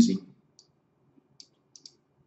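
A few faint computer mouse clicks, the last two close together near the end.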